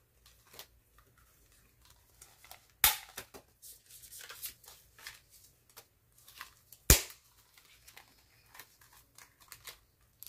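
Plastic envelopes rustling and scraping as they are handled on a six-ring binder, with two sharp metal clicks about four seconds apart from the binder rings snapping.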